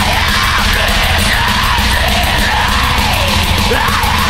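Pagan black metal: fast, steady drumming and distorted guitars under a harsh, yelled vocal line that bends up and down in pitch.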